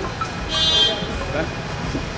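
A vehicle horn sounds once, a short high beep lasting about half a second roughly halfway through, over a steady bed of street traffic noise.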